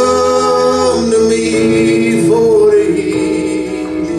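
A man singing long held notes of a slow folk-country song, with a second voice in harmony, over acoustic guitar and acoustic bass.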